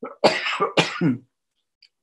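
An elderly man coughing, about three coughs in quick succession with his hand over his mouth, stopping about a second and a quarter in.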